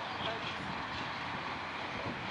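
Faint, indistinct voices over a steady background noise.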